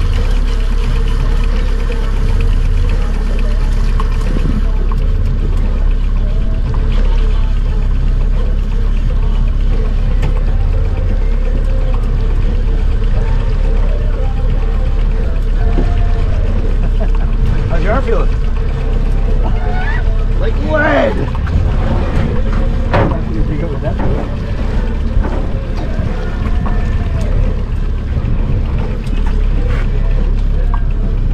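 A boat's motor running steadily, a constant low rumble with a steady hum above it. Indistinct voices come in over it partway through.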